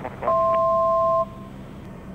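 A cockpit electronic alert tone, two steady pitches sounding together for about a second, over the steady drone of the turboprop cabin.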